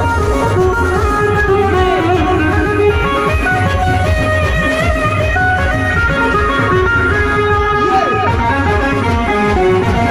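Live band music from a Roland keyboard played loud through a stack of PA speakers: a stepping melody of short held notes over a heavy, pulsing bass beat.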